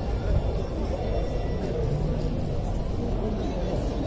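Outdoor street-show ambience: a steady low rumble with faint voices of people in the background.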